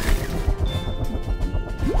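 Cartoon sound effects over background music: a sudden crash-like burst at the start, then a low rumbling as a small submarine's turbo boosters fire and pull it free of tangled kelp.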